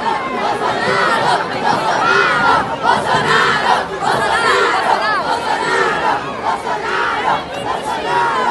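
A crowd of young students shouting and cheering excitedly, with many high voices overlapping in a dense, continuous din.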